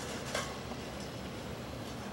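Steady night-time city street background noise, with one short light clink about a third of a second in and a couple of fainter ticks later.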